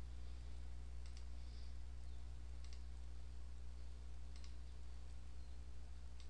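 Computer mouse buttons clicking three times, about a second and a half apart, each click a quick press-and-release pair, over a steady low hum.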